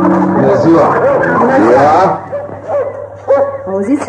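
A folk-style music bridge with plucked strings ends shortly after the start, followed by a dog barking and yelping, a sound effect for arriving at a village house.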